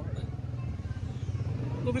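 Motorcycle engine running steadily, a low pulsing hum from the bike being ridden.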